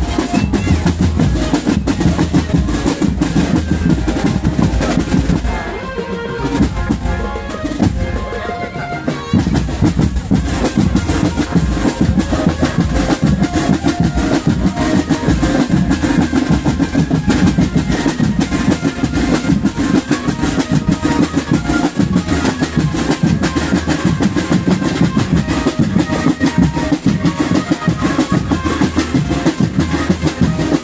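Marching drum band playing, with snare drums and bass drums in a steady, dense beat. About six seconds in the drumming thins to a quieter break, and the full band comes back in just after nine seconds.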